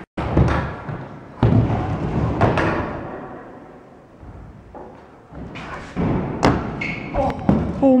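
Stunt scooter on a skatepark ramp: several sharp thuds and knocks as it lands and hits the ramp, with its wheels rolling on the surface in between.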